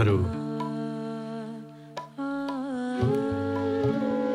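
Soft background music of long, steady held notes, moving to a new pitch about halfway through with a brief waver.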